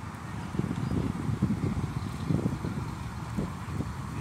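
Wind buffeting the phone's microphone in an uneven low rumble, over faint street traffic noise.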